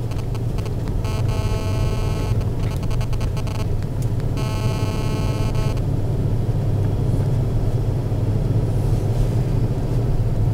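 Steady low rumble of a car's engine and tyres, heard from inside the cabin while driving slowly. A steady high buzzy tone sounds twice in the first half, once for a couple of seconds and again for about a second and a half.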